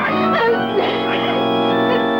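Background organ music playing sustained chords that shift from one to the next.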